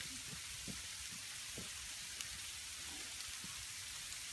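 Faint steady outdoor hiss with scattered soft low thuds.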